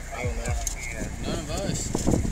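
Indistinct voices in short, untranscribed exchanges over a steady low hum.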